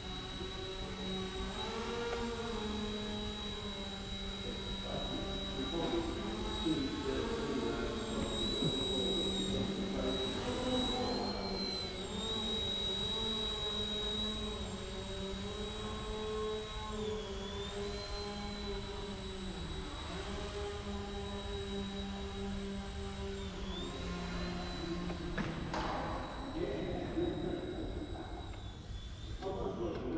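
Eachine E129 micro RC helicopter flying, its motors and rotor blades giving a steady hum with a high whine above it that dips and rises slightly in pitch as the throttle changes.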